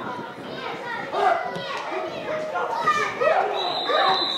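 Several voices shouting and calling out across an open football pitch during an attack on goal. A high, steady whistle tone starts near the end.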